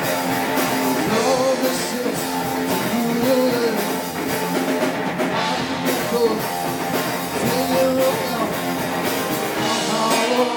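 A live rock band playing electric guitars and a drum kit, with a man singing over them.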